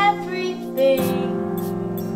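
A song: a woman's voice singing short phrases, at the start and again just before a second in, over held keyboard chords that change about a second in.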